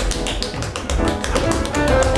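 Quick foot taps of a stage dance routine, several a second, over live instrumental accompaniment in a break between sung verses.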